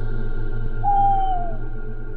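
Eerie ambient music drone under the scene, with one clear tone just under a second in that slides downward in pitch over about half a second.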